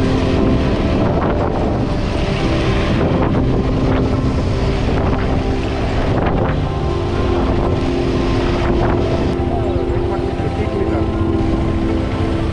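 KTM 390 Adventure's single-cylinder engine running at a steady cruising speed on a gravel track, with wind noise over the microphone and tyre noise. The engine note breaks off briefly a few times.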